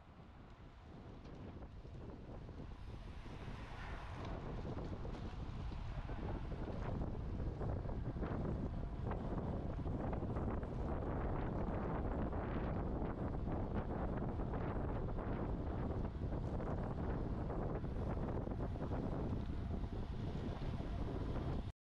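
Wind rushing over the microphone of a camera riding on a moving road bike, fading in over the first few seconds and then steady.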